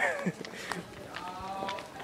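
Faint voices of people talking as they walk, one voice sliding down in pitch right at the start, with soft footsteps.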